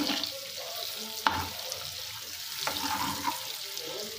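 Boiled eggs sizzling in hot oil in a nonstick pan while a steel spoon turns them, the spoon knocking against the pan about a second in and again near three seconds.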